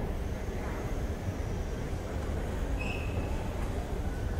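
Steady low rumble of a moving escalator, heard from on the escalator, mixed with the hum of a large station hall. A brief high squeak or beep comes about three seconds in.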